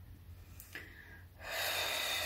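A woman breathing audibly: a faint short breath, then a long, louder breath beginning about one and a half seconds in.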